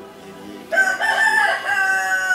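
A rooster crowing once: a loud, long call that starts about two-thirds of a second in and sinks slightly in pitch as it is held.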